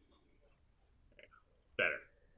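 A few faint computer mouse clicks, about half a second and a little over a second in, against quiet room tone.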